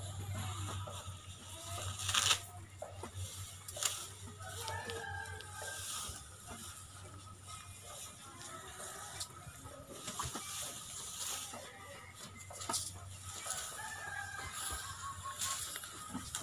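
Two drawn-out, wavering animal calls, one about five seconds in and one near the end, over rustling and scattered knocks, the sharpest knock about two seconds in, with a steady low hum underneath.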